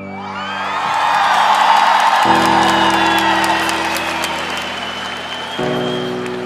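Large concert crowd cheering over the sustained keyboard chords of a song's intro. The cheering builds over the first second and then slowly fades, while the chord changes about two seconds in and again near the end.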